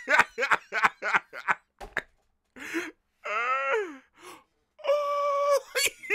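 A man laughing hard: quick bursts of laughter for the first two seconds, then two long drawn-out wailing laughs, the first falling in pitch.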